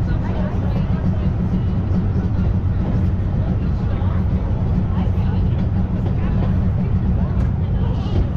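Steady low rumble of a rack-railway carriage running uphill on the Brienz Rothorn Bahn, with passengers' voices faint underneath.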